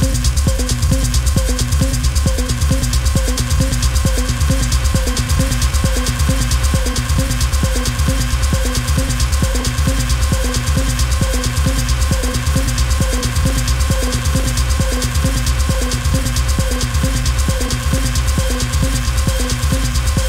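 Hard techno from a DJ mix: a steady, driving kick-drum beat under dense, rapid hi-hats and held synth tones, unchanging throughout.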